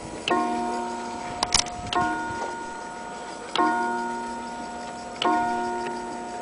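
Elliott bracket clock striking on its gong: four evenly spaced strokes about a second and a half apart, each ringing out and slowly fading. A couple of sharp clicks sound between the first two strokes.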